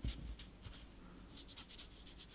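Faint, light scratching of a brush on paper, with a few soft strokes about one and a half seconds in.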